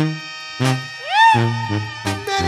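Live Mexican banda music: short, repeated bass notes with sustained horn notes above them, and a note that slides up and back down about a second in.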